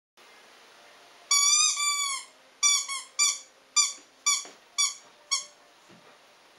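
Rubber squeaky toy ball squeezed by hand: two longer squeaks, then seven short ones about half a second apart.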